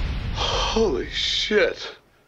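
A man gasping twice, two short voiced breaths that each fall sharply in pitch, on a film soundtrack.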